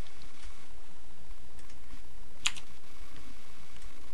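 A few faint ticks and one sharp keystroke on a computer keyboard about two and a half seconds in, over a low steady hum.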